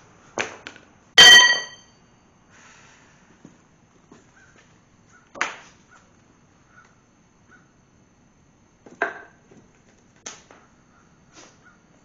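A steel tool clatters onto concrete with a ringing metallic clang about a second in, the loudest sound here. A few scattered duller knocks and clunks follow as the cast-iron engine block is handled.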